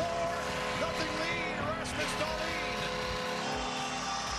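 Arena goal horn sounding in steady held tones over a cheering crowd, right after a home-team goal.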